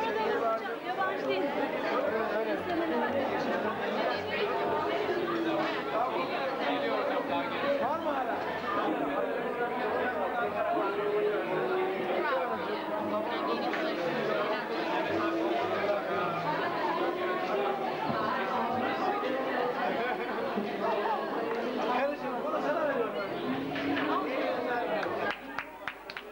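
Crowd chatter: many people talking at once, a steady babble of overlapping voices with no single speaker standing out.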